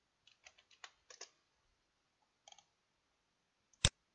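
Computer keyboard keys tapped lightly: a quick run of keystrokes in the first second or so and another couple about two and a half seconds in. Near the end comes a single louder, sharp click.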